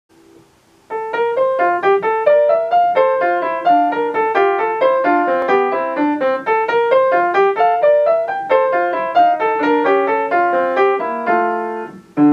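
Upright piano playing a quick classical piece in a steady run of short notes, starting about a second in.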